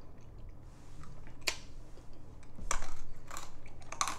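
Mouth sounds of a person chewing and working to swallow a sour hard candy: a few short, scattered clicks, the loudest cluster about three seconds in.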